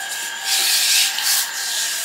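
A rough rubbing, scraping noise that swells about half a second in and eases after a second and a half, over a steady thin high background tone.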